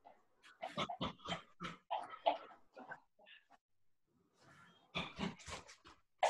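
A man's sharp, forceful exhales and grunts while shadowboxing, one quick breath pushed out with each punch of a combination. They come in quick runs, one starting about a second in and another near the end.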